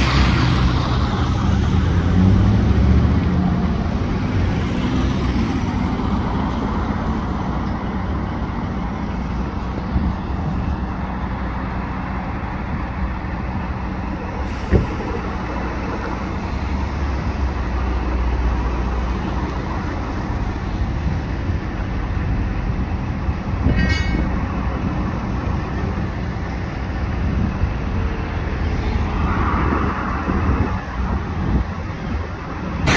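Street traffic: car and truck engines and tyres going by slowly, with a vehicle passing close at the start. There is a single sharp knock about halfway through and a brief high ringing a little later.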